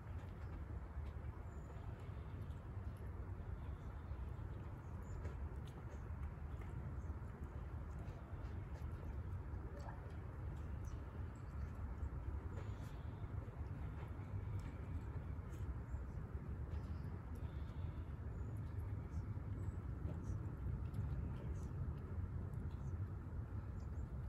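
Steady low background rumble, with faint light ticks scattered through it.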